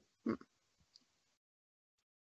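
A single short throaty vocal sound from a woman, a brief grunt or clipped syllable, about a quarter second in. Faint line hiss follows, then the audio drops to dead digital silence about a second and a half in.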